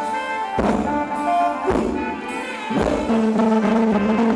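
Live band playing a Thai ramwong dance song, with held brass notes and a drum stroke about once a second.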